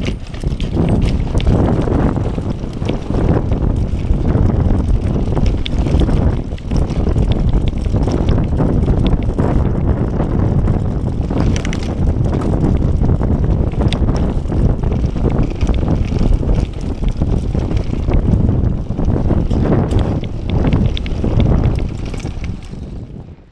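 Mountain bike riding fast down a loose dirt and leaf trail: constant wind buffeting on the camera microphone over tyre noise, with many quick rattles and knocks from the bike over the rough ground.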